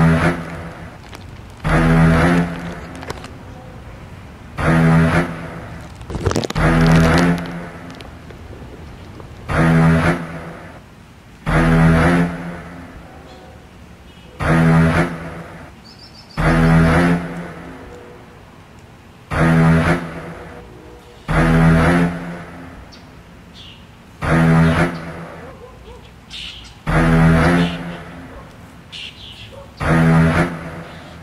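A man snoring deeply in his sleep, loud rhythmic snores in pairs about two seconds apart, the pairs coming about every five seconds.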